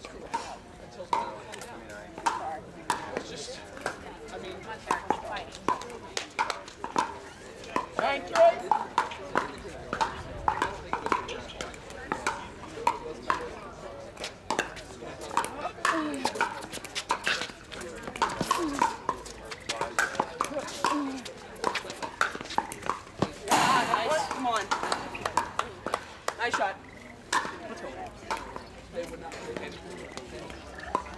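Pickleball paddles hitting a hard plastic ball: sharp hollow pops, often about a second apart, over spectators' chatter. A short loud burst of crowd noise comes about two-thirds of the way through.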